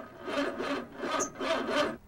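A small car's engine cranking over again and again without catching, in several rhythmic surges: the car will not start, its engine dead.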